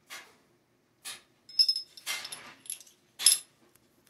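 Sharp metallic clicks and clatter of Smith & Wesson M&P Shield pistol parts (slide, barrel, recoil spring) being handled and fitted together. The loudest clicks come in the middle and shortly before the end, some with a brief high metallic ring.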